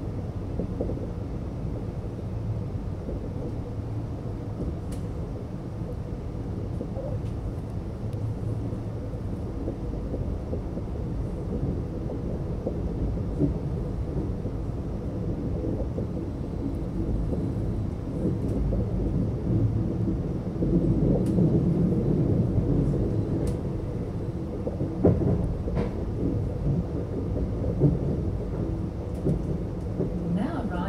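Alstom X'Trapolis electric suburban train running at speed, heard from inside the carriage as a steady low rumble and hum that grows louder about two-thirds of the way through, with a few sharp clicks.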